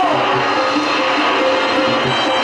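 Live stage band music for a jatra folk-theatre performance: a melodic instrument playing short repeated notes over a few low drum beats.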